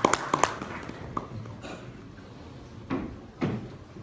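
Scattered applause from a small audience, the last few hand claps trailing off in the first half second, then room noise with a few dull knocks, two of them about three seconds in.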